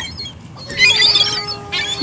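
Gulls squawking in a short, loud burst of harsh calls about a second in, as the flock squabbles over food, over faint background music.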